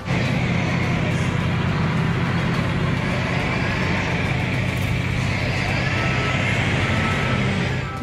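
A tractor engine running steadily under load, with a low, even hum.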